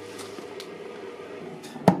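Acrylic UV cover of an Anycubic Photon resin 3D printer being set down over the printer, landing with a single sharp knock near the end, over a steady low hum.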